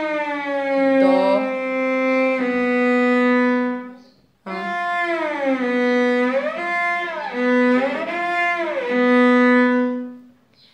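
Cello bowed on the A string, shifting with audible glissandos between first and fourth position: a note slides down to B and is held, then after a short break a new phrase slides down to B and glides up and back down twice.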